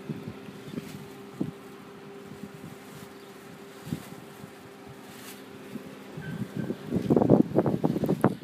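Wind buffeting the microphone in irregular gusts that grow louder from about six seconds in, over a steady low hum with a few light clicks.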